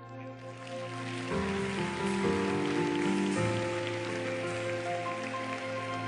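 Background music of sustained chords that change about a second in and again a little past the three-second mark, over a steady hiss.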